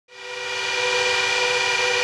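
Antminer S17+ cooling fans running at full speed: a steady loud rush of air with several whining tones through it, fading up over about the first second.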